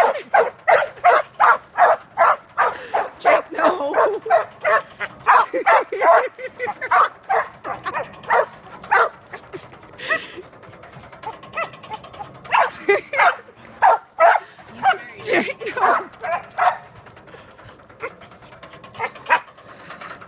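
Small dog barking rapidly and repeatedly, about three barks a second, at a playground merry-go-round. The barking pauses briefly about halfway through, then starts again.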